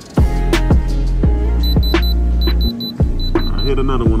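Hip-hop beat with heavy bass and drum hits. Over it, from about a second and a half in, a Diamond Selector II tester's buzzer gives short high beeps in three quick bursts as its probe touches the watch stones, the signal that they test as diamond.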